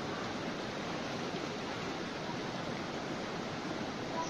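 Steady rush of a fast, shallow mountain stream running over stones, with a herd of cattle wading through it.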